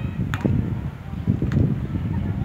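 Low, uneven rumble of wind buffeting the phone's microphone, with two short sharp knocks, about a third of a second in and again about a second and a half in.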